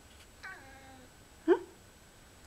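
Lynx point Siamese cat giving one faint, drawn-out call that slides slightly down in pitch as it watches leaves outside. A woman's short, louder "huh?" follows about one and a half seconds in.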